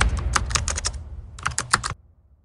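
Keyboard-typing sound effect for on-screen text being typed out: two quick runs of key clicks, about six and then about five, over a low rumble.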